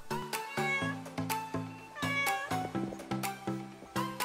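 Ceiling dome security camera making weird, cat-like meowing noises, a run of short pitched calls, over background music.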